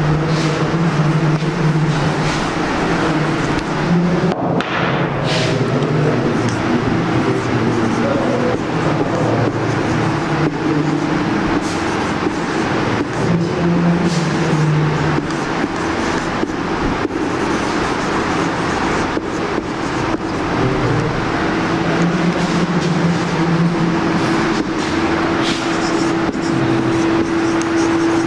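A loud, steady engine- or motor-like drone, its low hum swelling and fading every few seconds. A few brief scratches of a marker on a whiteboard.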